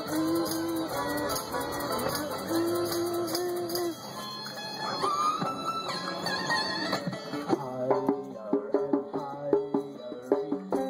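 Live acoustic band playing an instrumental passage: guitars play and a tambourine is shaken in the first part. Over the last few seconds a djembe is struck in a quick, busy rhythm.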